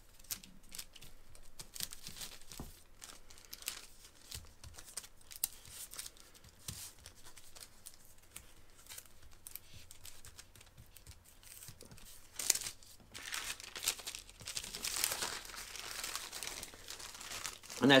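Parchment paper crinkling and rustling as a thin raw beef patty is handled and the sheets are peeled away from it, busiest in the last few seconds.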